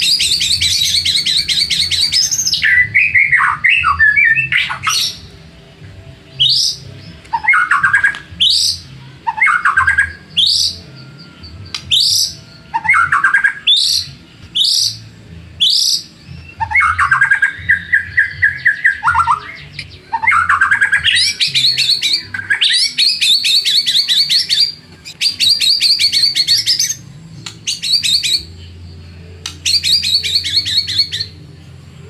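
White-rumped shama singing loudly: fast rattling trills alternate with clear, rising whistled notes about one a second and lower warbled phrases.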